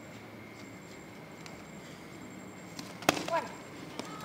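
A single sharp slap of a kick landing on a taekwondo body protector about three seconds in, followed at once by a short, falling vocal cry.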